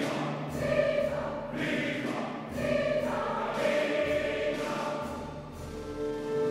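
Large mixed choir singing full-voiced with orchestral accompaniment, in repeated accented phrases about once a second.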